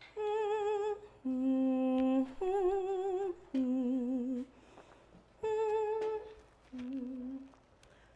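A woman humming a slow tune, note by note with a wavering vibrato, in short phrases with brief gaps and a pause about halfway through.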